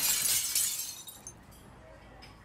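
A bright, glassy shattering and tinkling noise that fades away within about a second, leaving near silence.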